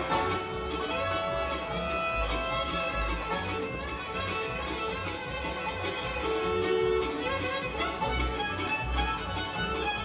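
Live bluegrass band playing an instrumental break, the fiddle taking the lead over mandolin, banjo, acoustic guitar and upright bass on a steady beat.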